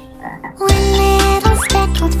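Cartoon frog croaks: after a quiet start, a run of deep, loud croaks begins a little under a second in, broken into about three parts with a rising sweep between them.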